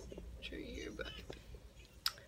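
Soft, quiet speech from a girl, close to a whisper.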